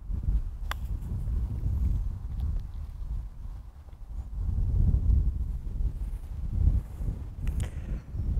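Wind buffeting the microphone in gusts, with one light click about a second in: a golf club striking the ball in a soft chip from the fringe onto the green.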